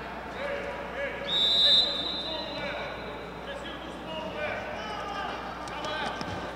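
A referee's whistle blown once, a short steady blast about a second in, over background voices and calls from the court.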